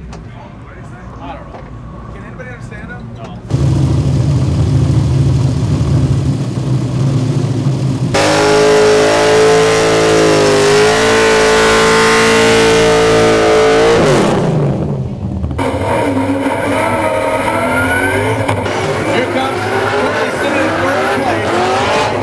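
Nissan Silvia S13 drift car engine running with a loud, low rumble. About eight seconds in it is held at a steady high rev while the rear tyres spin and squeal in a burnout. The revs drop after about six seconds, and the car is then heard revving and wavering in pitch as it drifts.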